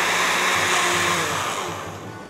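Oster countertop blender running at high speed with a thick liquid inside, a steady whirring churn that fades in its second half as the motor winds down.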